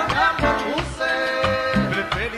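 Live Latin tropical band playing an instrumental passage: sustained melodic notes and short pitch slides over bass and steady percussion.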